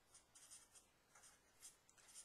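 Faint marker strokes scratching on paper, a series of short strokes as symbols are written.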